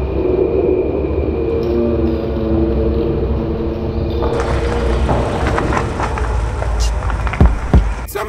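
A steady low rumble with several held tones, joined about four seconds in by a hiss and scattered clicks, then two loud, sharp bangs about half a second apart near the end.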